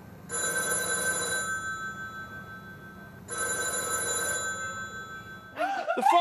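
The house telephone ringing twice, about three seconds apart, each ring a steady electronic tone lasting about a second and then fading away. Just before the end, excited shouting voices break in.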